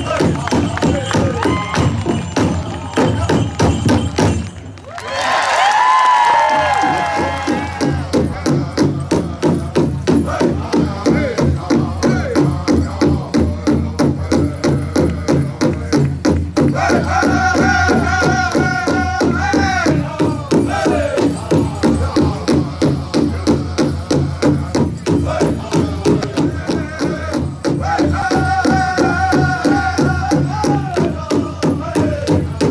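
Native American drum group accompanying hoop dancing: a big drum struck in a steady, even beat under a chorus of singers. After a brief pause just before five seconds in, a new song starts with a high voice that comes down in pitch. Further sung phrases rise over the drum later on.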